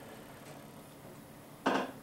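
Quiet room tone, broken near the end by one short, noisy intake of breath.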